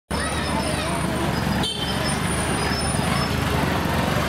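Busy street noise: a motorcycle engine running past amid steady traffic, with people's voices in the background.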